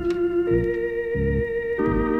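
Lounge organ music played from a vinyl LP: held organ chords over a bass line that pulses about twice a second, with a change of chord about half a second in.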